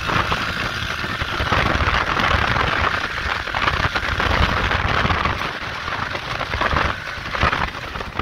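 Steady rough outdoor noise with a low rumble that rises and falls: wind buffeting the phone's microphone.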